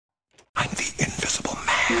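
A person's voice, quick and whispery, starting about half a second in after silence and ending on a short held note.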